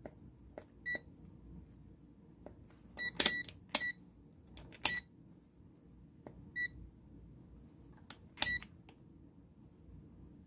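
A red handheld electronic gadget beeping: about seven short, high, single-tone beeps at irregular intervals, loudest around three seconds in and again near the end, with sharp button clicks between them.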